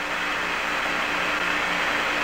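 Steady hiss of radio static from the Apollo 11 transmission from the lunar surface, with a faint low hum underneath and no voice on the channel.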